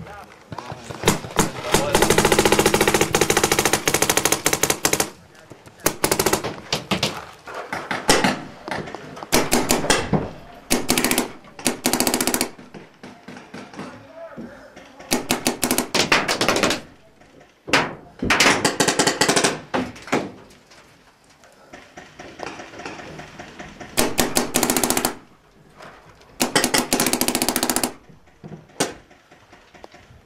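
Paintball markers firing rapid-fire bursts, several volleys of one to three seconds each with short pauses between, the longest near the start.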